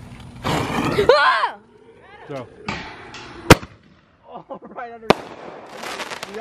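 Two sharp firework reports about a second and a half apart, the first the louder, with a short hiss just before it. A voice calls out loudly in the first second and a half.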